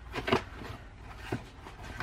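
Pages of an 8x8 patterned scrapbook paper pad being turned by hand: a quick paper rustle and flap about a quarter second in, the loudest sound, then a lighter tap of paper about a second later.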